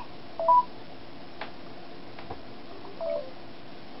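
Smartphone voice-assistant beeps: a short two-note tone stepping up about half a second in, then a quieter tone stepping down about three seconds in, the start- and stop-listening cues of the phone's speech recognition. A couple of faint clicks fall between them.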